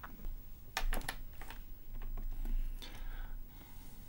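Clicking at a computer: a quick run of three sharp clicks about a second in, followed by a few softer clicks, over a low room hum.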